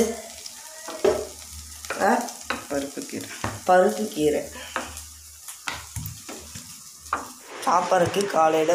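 A steel spatula stirs and scrapes greens frying in a stainless steel pan, with sizzling and repeated clicks of metal on metal.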